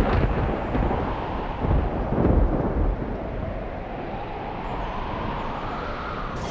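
Dramatic TV background score of deep rumbling booms, strongest in the first couple of seconds, with a rising tone swelling up near the end.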